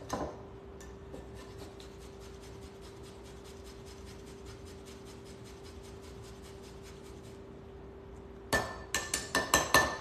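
Frozen fresh ginger root being grated into a glass mason jar with a hand tool: a long run of faint, quick scraping strokes, about six a second. Near the end come several louder sharp knocks, the tool and ginger hitting the jar.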